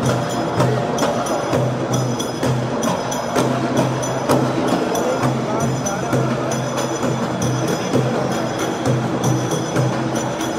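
Live music with a steady, repeating drumbeat, over the chatter of a large crowd.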